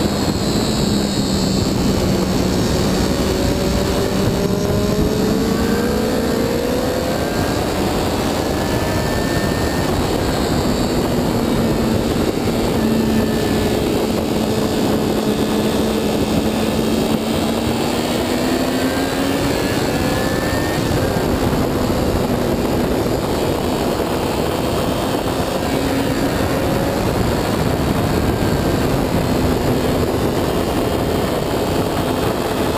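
Triumph Daytona 675 inline-triple sportbike engine at speed on track, its note climbing through the revs and dropping back several times through the gears. A heavy rush of wind on the low-mounted camera runs under the engine sound.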